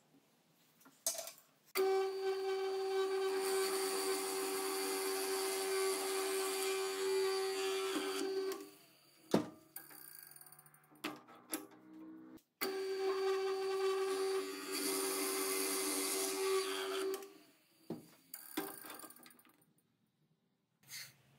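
Power drilling machine boring a hole into a small wooden block: the motor runs with a steady hum in two long runs, the first about seven seconds and the second about five, with knocks and clunks between them and near the end as the block is handled.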